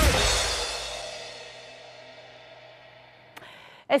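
The end of a short music sting with drums and cymbals: its last crash rings out and fades away over about three seconds.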